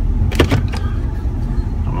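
Tow vehicle's engine running at low speed, heard inside the cab as a steady low rumble, with a sharp click about half a second in.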